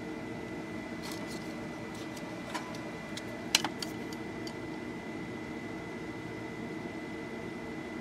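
A few light clicks and taps of wire leads and a soldering iron being worked on a hand-wired circuit, the sharpest about three and a half seconds in, over a steady background hum with a faint high whine.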